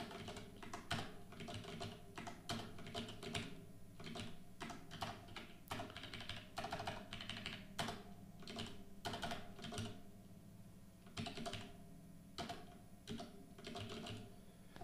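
Typing on a computer keyboard: irregular runs of keystroke clicks with brief pauses between them.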